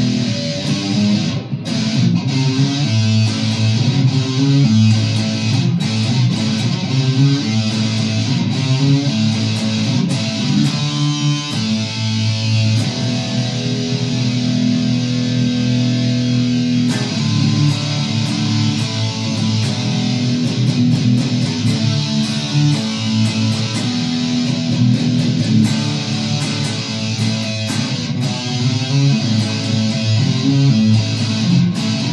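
Firefly FFST relic Stratocaster-style electric guitar played with distortion, a continuous stretch of riffs and chords.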